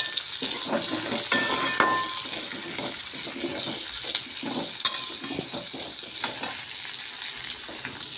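Whole shallots and garlic cloves sizzling in hot oil in a deep pan, stirred with a steel ladle that scrapes and clinks against the pan at irregular moments, once sharply about five seconds in.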